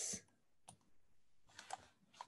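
Faint clicks from a computer being operated: a single click a little after the start and a short cluster of clicks near the end.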